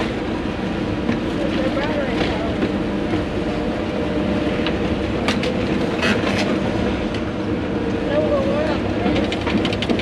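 Excavator engine running steadily, heard from inside the cab, as the bucket and thumb tear at and crunch wooden house debris. A few sharp cracks of breaking wood come about five to six seconds in.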